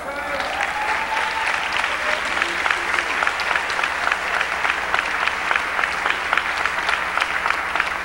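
Church congregation applauding: many hands clapping, building up over the first second and then holding steady.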